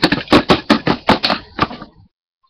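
A rapid run of sharp clicks or taps, about six a second, that stops near the end.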